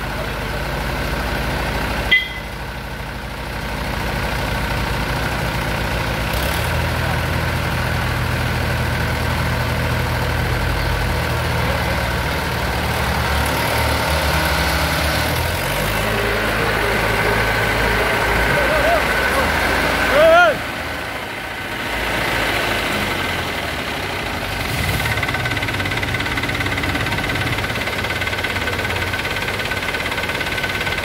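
Mahindra 475 DI tractor's diesel engine working under load as it tows a bus stuck in mud, its note shifting several times as throttle and load change. There is a short sharp knock about two seconds in and a brief shout about two-thirds of the way through.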